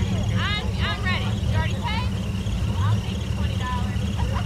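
A 1940s Ford coupe hot rod's engine idling with a steady low rumble, the car barely creeping forward. Quick high chirps sound over it.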